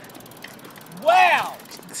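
Fast, even ticking of a BMX bike's freewheel ratchet, with one loud drawn-out vocal call that rises and falls in pitch about a second in.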